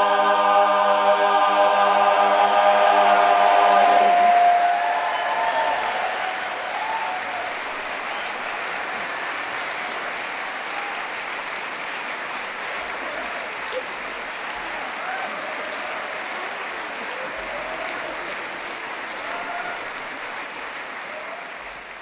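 A mixed-voice barbershop chorus holds its final chord in close harmony, the top note swelling, and cuts off about four seconds in. An audience then applauds with scattered whoops and cheers, and the applause fades away near the end.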